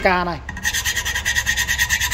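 Steel scissor blade scraped rapidly back and forth along the edge of a stone countertop, starting about half a second in, several strokes a second, with a steady high squeal running through the scraping. It is a scratch test of the stone surface.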